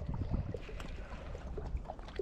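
Low wind rumble on the microphone, with faint small clicks and squelches from hands squeezing a nearly empty bottle of scent gel onto a soft plastic lure.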